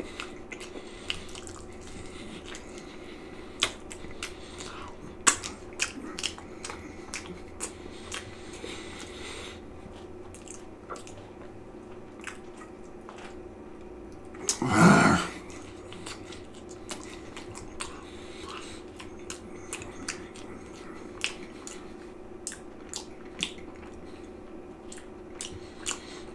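Close-up chewing and biting of pizza topped with pork and beans: many short wet mouth clicks and smacks over a steady low hum. About halfway through comes one brief hummed "mm" from the eater.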